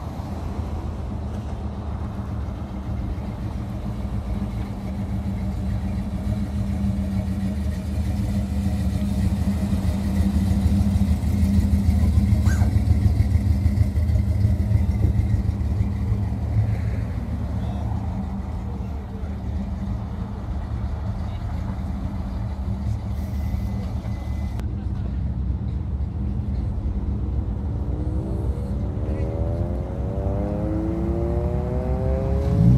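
Car engine running low and steady as cars move slowly past, growing louder toward the middle and then easing off. Near the end an engine revs up, rising in pitch.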